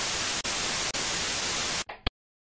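Television-style static: a steady white-noise hiss with a couple of brief breaks, cutting off suddenly near the end.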